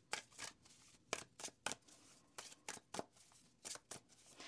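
A deck of tarot cards being shuffled by hand: a faint run of short card strokes, about three a second, irregularly spaced.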